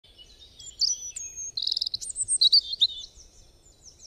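Small birds chirping, with a quick, even trill about one and a half seconds in; the calls fade toward the end.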